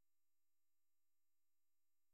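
Near silence: the audio drops to almost nothing between spoken phrases.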